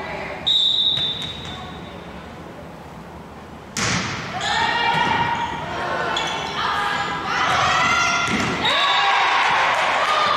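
A volleyball referee's whistle gives one steady blast about half a second in. A few seconds later comes a sharp hit of the ball on the serve, then players shouting and calling during the rally.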